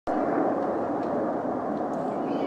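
Jet aircraft passing overhead: a steady, rushing noise that holds its level throughout.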